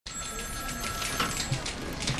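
Telephone bell ringing in a busy office, its tone fading out a little over a second in, over a steady patter of small clicks and a low background hum.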